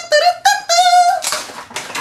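A high-pitched, sing-song falsetto voice making a quick run of short notes, then a brief rustle near the end.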